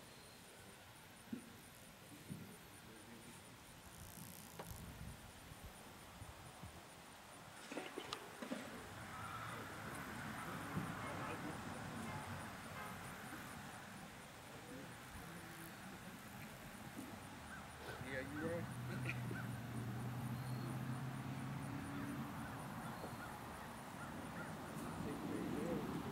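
Faint, indistinct voices of people talking outdoors, with a few sharp knocks about eight seconds in. A low steady hum joins in over the last several seconds.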